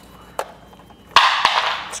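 Handling noise as a studio flash head is fitted onto a monopod's threaded spigot: a light click, then about a second in a loud scraping rustle with a knock in it, fading over most of a second.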